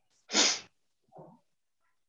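A person sneezing once, short and sharp, followed about a second later by a much quieter, briefer sound.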